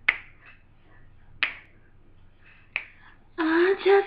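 Finger snaps keeping time, three sharp single snaps about 1.3 seconds apart. Near the end a woman's voice starts singing.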